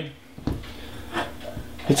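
Faint handling sounds of someone moving about a kitchen and picking up a glass bowl: a few soft knocks and rubs, spaced out.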